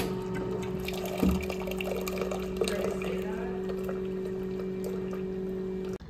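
Automatic coffee machine dispensing coffee into a ceramic mug: a steady pump hum with the stream of liquid pouring, and a brief knock about a second in.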